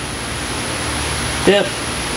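Steady rushing background noise, with a man saying "dip" once about a second and a half in.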